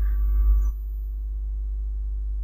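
Steady low hum with faint, thin steady tones above it. A faint hiss in the first part stops suddenly under a second in.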